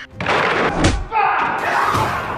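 Fight sound effects: loud crashing with one heavy thud just under a second in as a body is slammed onto a wooden table, then more scuffling crashes with a voice shouting.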